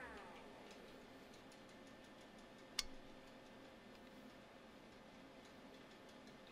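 Near silence broken by a single sharp click about three seconds in, from the battery bank's circuit breaker tripping and cutting power to the 48 V UPS.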